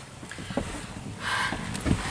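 Quiet rustling and handling sounds inside a vehicle cabin, with a short hissy rustle just past the middle and a soft low thump near the end.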